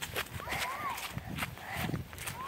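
Running footsteps on grass, heard as a quick, irregular series of thumps with the jostling of a handheld camera, and a short child's vocal sound about half a second in.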